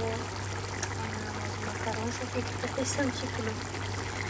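A pot of meat and potato stew bubbling at a steady boil, with voices talking in the background.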